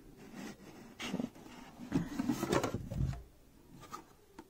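Handling noise as a glass perfume bottle is lifted out of its cardboard gift-box insert: irregular scraping and rubbing of card with small clicks, and a soft thump near the end.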